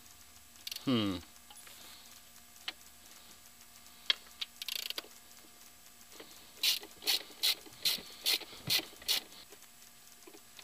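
Socket ratchet working a valve cover bolt loose on a Chevrolet 454 V8. About six and a half seconds in there is a run of about seven ratcheting strokes, two or three a second. About a second in there is a short falling tone.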